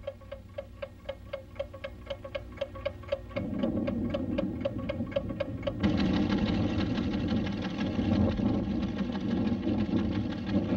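Steady mechanical ticking of a seismograph-type recording instrument, about five ticks a second, as a sound effect on an old cartoon soundtrack. A low orchestral drone comes in about three and a half seconds in, and near the middle the ticking gives way to full orchestral music.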